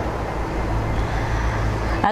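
Steady rushing background noise with a strong low rumble, with no distinct events in it.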